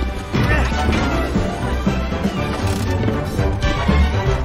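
Film score music with a crash sound effect.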